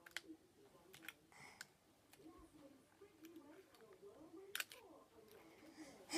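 Faint scattered clicks of a hand-held paper hole punch being worked on folded wrapping paper, with the sharpest click a little past the middle.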